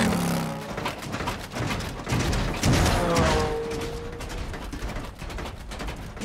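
Action-cartoon soundtrack: background score mixed with racing-vehicle engine sound effects, with a run of quick clicks and knocks in the second half.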